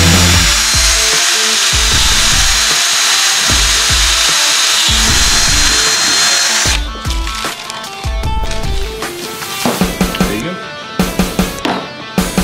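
Power drill boring a hole through the rib bone of a tomahawk steak, running steadily for about seven seconds and then stopping. Background music plays throughout and carries on alone afterwards.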